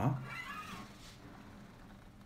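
A single low note plucked on an acoustic guitar, then a brief wavering high-pitched call lasting under a second.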